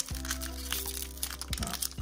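Foil Pokémon booster pack wrapper crinkling and crackling in short sharp bursts as fingers pull at its sealed top, over background music with steady held notes.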